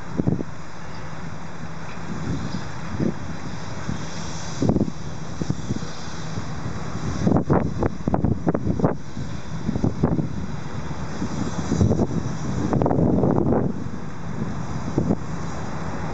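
Wind buffeting the microphone in uneven gusts over a steady background of road traffic, with scattered short knocks.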